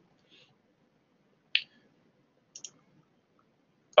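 A quiet pause holding a few short clicks: one sharp click about a second and a half in, then two quick, softer clicks together about a second later.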